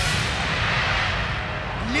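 A stage fire effect bursting with a long rushing whoosh that swells about half a second in and fades near the end.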